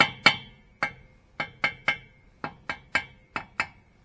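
Engineer's hammer driving a steel punch against a seized lug nut on a truck wheel: about eleven sharp, ringing metal-on-metal blows in uneven groups of two or three. The nuts are stuck fast.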